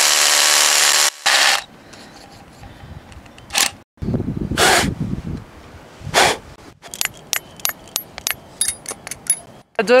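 Hammer drill boring a bolt hole into rock, running loud and steady for about the first second, then a brief second burst. After it, a few short rushing noises and a run of light, sharp clicks.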